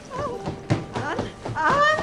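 An elderly woman calling out "Anne?" in rising, questioning calls, one near the start and a longer one near the end, with a few footfalls on wooden stairs between them.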